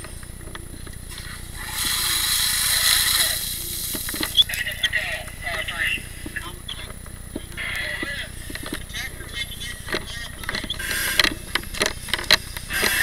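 A loud hiss about two seconds in that lasts about a second and a half, among scattered knocks and clatter of firefighting gear and muffled voices.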